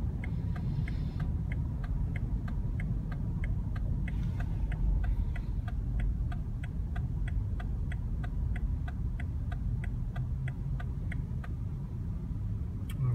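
A car's turn-signal indicator ticking steadily in the cabin, about three ticks a second, over the low rumble of the car moving slowly as it parks itself.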